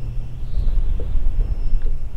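Wind buffeting a camera microphone outdoors: a loud, uneven low rumble, with a few faint ticks about a second in.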